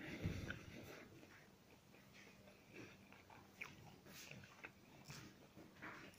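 Faint chewing of a crispy egg-stuffed flatbread (mughlai paratha), with a few soft, scattered crunches over near silence.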